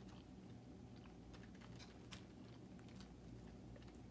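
Faint chewing of food with a few soft, crisp clicks, over a low steady hum.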